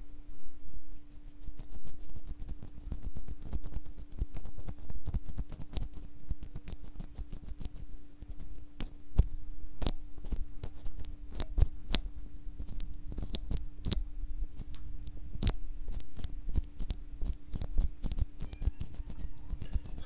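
A stock, out-of-the-box NovelKeys Cream mechanical keyboard switch, POM stem in a POM housing, pressed repeatedly by hand and clicking irregularly several times a second. It is slightly scratchy, as the new POM stem and housing are not yet broken in or lubed. A steady low hum runs underneath.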